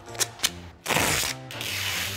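Black gaffer tape pulled off the roll in one rasping strip about a second in, after two sharp clicks, as it is laid over a cable on a wooden floor.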